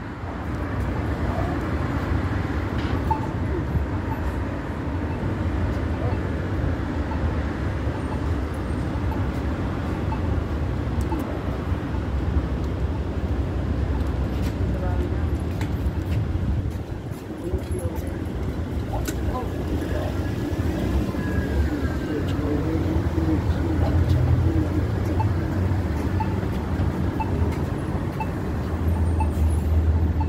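Steady city street traffic noise, a low rumble of passing cars, with faint voices now and then.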